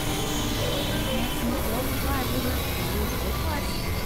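Experimental electronic noise music from synthesizers: a dense, steady wash of noise over a low drone, with wavering, gliding tones weaving through it.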